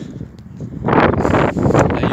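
Wind buffeting a phone's microphone outdoors, a loud gust of rushing noise swelling up about a second in.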